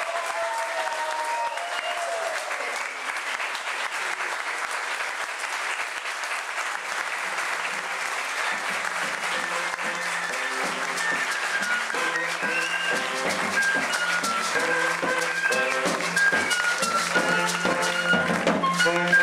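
A room full of people applauding steadily, with a few voices calling out at first. About seven seconds in, music with plucked guitar notes and a bass line comes in under the clapping and grows louder.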